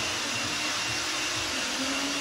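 Steady whirring noise of a running machine, with a faint low hum held underneath it.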